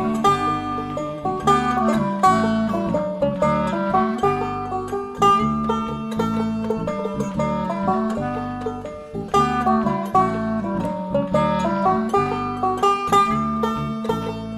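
Instrumental break in a bluegrass-style song: banjo picking quick runs of plucked notes over a string-band accompaniment.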